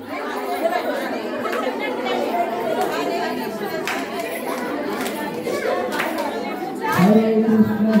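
Many people chattering at once, a dense mix of overlapping voices with a few sharp clicks. Near the end, one voice starts to chant.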